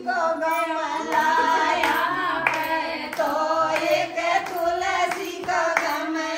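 Music: a voice singing a melody over accompaniment, with sharp percussive beats.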